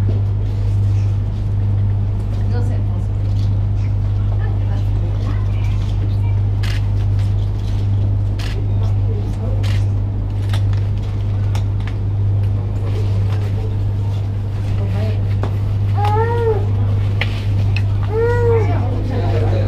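A steady low hum with a faint murmur of voices and scattered light clicks; near the end, two short rising-and-falling cries from a voice.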